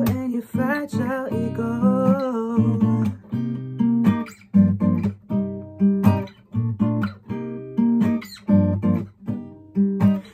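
Acoustic guitar strummed in a steady chord pattern, with a wavering sung vocal line over the first few seconds.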